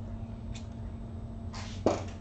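A dry-erase marker being handled at a whiteboard: a short rustle, then one sharp click just before the end, over a steady low electrical hum.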